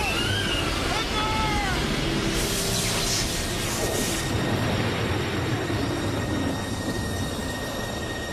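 Film soundtrack effects: a dense, steady rushing noise, with a louder hissing whoosh from about two and a half to four seconds in. Short gliding cries sound over it in the first two seconds.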